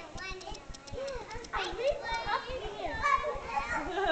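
Young children's voices, chattering and calling out while they play.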